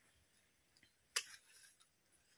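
A single sharp snip of small harvesting scissors cutting through a tomato stem about a second in.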